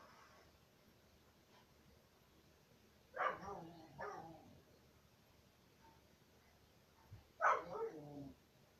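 A dog barking: two short barks about three seconds in, and another near the end.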